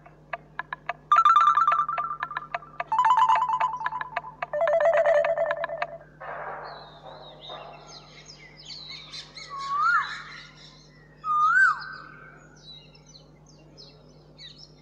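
Background-score sting: steady ticking clicks, then three loud pulsing notes, each lower than the last. These give way to a swish and forest bird calls, with two rising-and-falling whistles a second or so apart near the end.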